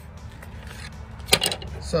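A short, sharp clatter about a second and a half in, as a piece of wood is handled on the workbench, over a low steady hum.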